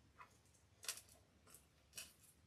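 A few faint, sharp clicks of a plastic badge reel being handled and pressed between the fingers, the sharpest about a second in and another at the very end.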